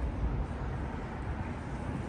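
Steady low rumble of outdoor city background noise, with no distinct event standing out.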